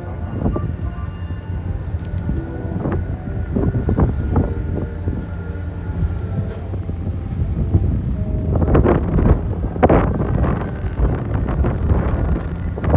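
Outdoor rumble with irregular gusts and knocks, wind buffeting the microphone. Faint music with held notes fades out about halfway through.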